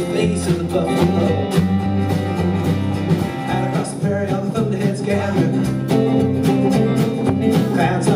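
Live band music: acoustic guitar strummed in a steady rhythm over upright bass.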